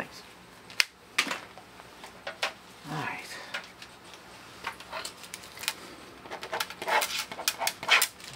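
Scattered sharp clicks and light taps of small objects being handled, irregular and growing busier in the second half, with a short low vocal sound about three seconds in.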